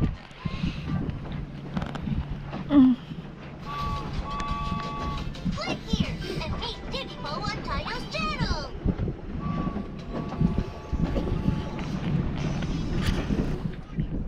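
Electronic beeps and cartoonish voice-like sounds from a game on a mobile phone: two runs of steady held beep tones with a stretch of wavering, voice-like sound between them, over a low steady hum.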